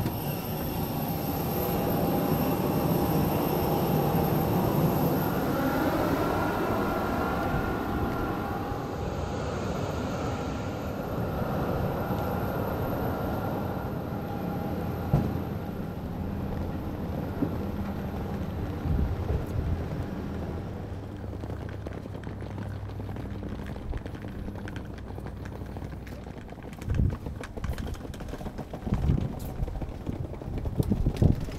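Steady whine and rumble of jet aircraft on the apron, with whining tones that shift in pitch about six to ten seconds in. The noise fades after about twenty seconds, leaving quieter noise with a few knocks near the end.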